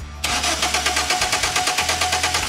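Car engine cranking on its starter motor without starting, its fuel pump disabled, beginning about a quarter second in: a starter whine with an even pulsing of about seven beats a second as the cylinders come up on compression during a cranking compression test.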